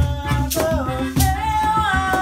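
Acoustic band playing a song: a voice singing a melody with gliding notes over acoustic guitar, with a steady beat of cajon strokes and shaker.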